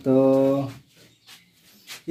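A man's voice holding one drawn-out word at a steady pitch for under a second, then quiet with a few faint knocks.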